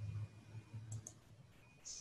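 Faint clicks and low bumps over a quiet video-call line, with a couple of sharp clicks about a second in.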